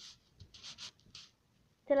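A young child whispering softly: a few short, breathy hisses with no voiced pitch, then a voice starts speaking near the end.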